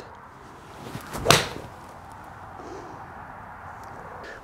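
Golf swing with a cast PXG 0211 7-iron striking a ball off a hitting mat: a swish that builds into a single sharp impact about a second and a third in. It is a decently struck shot.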